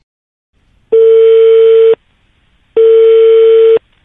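Telephone line tone as a call is placed: two loud, steady beeps of the same pitch, each about a second long, with a short gap between them.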